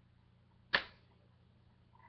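A rubber band snaps once against a hand or wrist: a single sharp snap about three quarters of a second in, dying away quickly.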